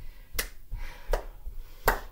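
A few sharp hand claps, evenly spaced about one every three-quarters of a second.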